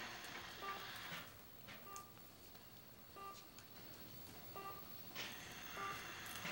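Heart monitor beeping faintly and regularly in an operating room, a short pitched beep about every 1.3 seconds, with some hiss at the start and near the end.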